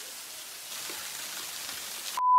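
Water from a small waterfall pouring and splashing onto rocks: a steady hiss that gets a little louder about two-thirds of a second in.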